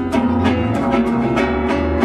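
Live acoustic ensemble playing: guitar strummed in a steady rhythm over deep double bass notes.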